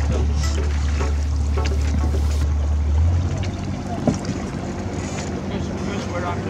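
Low, steady rumble of wind on the microphone that stops abruptly about three seconds in, over water splashing and knocking from canoe paddles, with faint voices.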